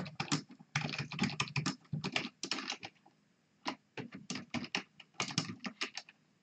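Typing on a computer keyboard: quick runs of keystrokes with a short pause about halfway through.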